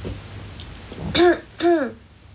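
A young woman clearing her throat twice in quick succession, two short voiced sounds about half a second apart, starting about a second in.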